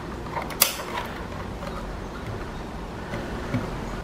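An RJ45 Ethernet plug pushed into the Internet port of a Linksys Atlas 6 mesh router, with one sharp click about half a second in as it seats, then a few faint handling ticks over a low hum.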